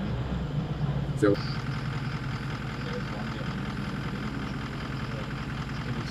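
Vehicle engine running at low speed, a steady low hum heard from inside the cabin, with one short sharp sound about a second in.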